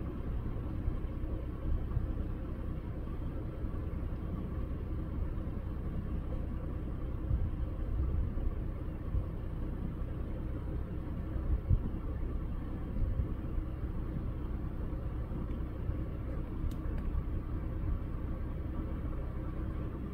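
A vehicle engine idling steadily, a low rumble with a few brief louder low bumps.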